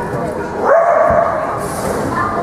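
A dog giving one drawn-out, high bark during an agility run, rising and then held for nearly a second, starting a little after half a second in, with people's voices around it.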